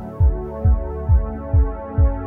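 Background electronic music: a steady kick drum beating about twice a second under held synthesizer chords.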